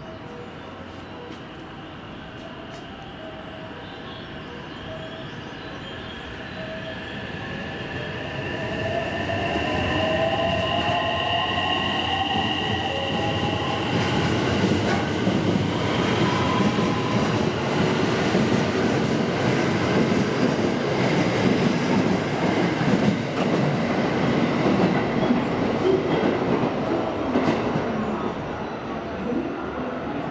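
Electric commuter train going by close at hand. A motor whine rises in pitch as it builds up, and the train's rumble grows loud. Heavy wheel-on-rail noise follows as the cars pass, easing off near the end.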